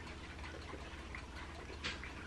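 A person swallowing from a glass mug in a quiet room with a steady low hum, faint small mouth and glass sounds, and one brief click near the end as the mug leaves the lips.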